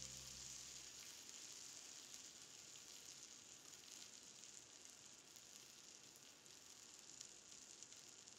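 Faint sizzling of a pat of butter melting in a hot pan, with small crackles. A held music note fades out in the first second.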